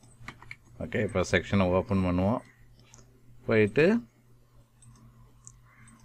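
A few computer mouse clicks near the start, amid a man's speech that is the loudest sound.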